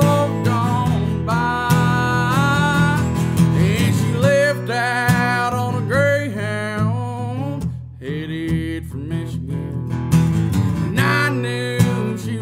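A man singing a slow country-style song over his own strummed acoustic guitar, with a short pause in the strumming just before the middle.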